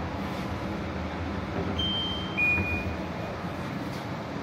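A steady low rumble with two short electronic beeps about two seconds in, the second lower in pitch and longer than the first.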